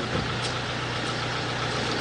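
Steady low hum of an idling vehicle engine under a constant outdoor background noise.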